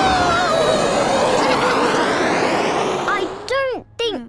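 Cartoon aeroplane engine and rushing air as the plane loops the loop, under a long wavering cry of 'whoa' that slides down in pitch. It cuts off a little after three seconds in.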